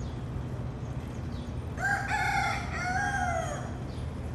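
A rooster crowing once, starting about two seconds in and lasting under two seconds, its call rising and then falling away.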